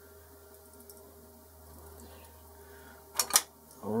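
Faint steady workshop hum, then two sharp metallic clicks about three seconds in as a hex key is set into the cap-head screw on top of the lathe's tool holder.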